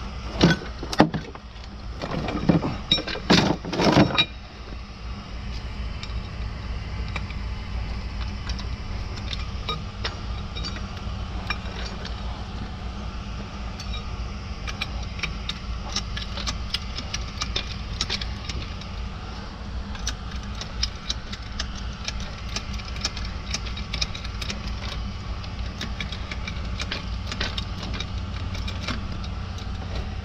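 Hydraulic floor jack being lifted out of its hard plastic case, with loud clattering knocks for the first few seconds. After that comes a steady low rumble with many light metallic clicks, thicker from about halfway on, as the jack's long handle is fitted and worked.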